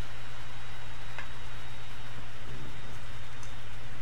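Steady low hum with an even background hiss, and a faint tick about a second in.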